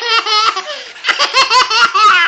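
A baby laughing hard in quick, high-pitched bursts, in two runs, set off by being scratched or by a hand scratching beside him.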